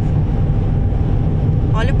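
Steady low engine and tyre rumble inside the cabin of a Fiat Panda driving along a highway.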